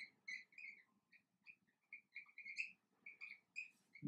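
Marker squeaking faintly on a whiteboard while writing, a string of short, irregular high-pitched chirps.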